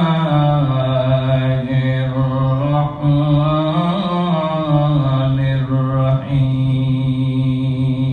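A man chanting a Quranic recitation in the drawn-out melodic style, holding long notes for a second or more, with short breaks for breath about three and six seconds in.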